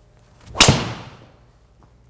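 A driver head striking a golf ball off a tee: one loud, sharp crack about half a second in that rings out briefly.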